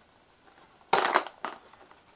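Packaging being handled while a camera box is unpacked: a short burst of crinkling and crackling about a second in, lasting about half a second.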